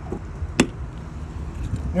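A single sharp plastic click about half a second in, over a low background rumble: the hinged plastic cap of a travel trailer's outside sprayer port being twisted and latched shut.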